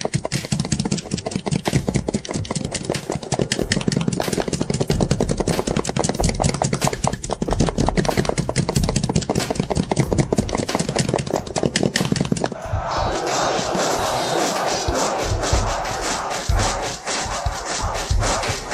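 Galloping hooves of a massed cavalry charge, a dense rapid clatter. About twelve and a half seconds in it gives way to the din of battle, a crowd of soldiers shouting.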